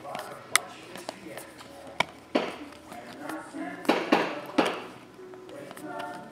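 Glossy chromium trading cards being flipped from one hand to the other: sharp card snaps and clicks with short swishes of cards sliding over each other, busiest around the middle.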